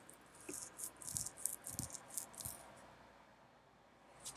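Faint rattling: a quick run of small clicks over about two seconds, with a few soft thumps among them.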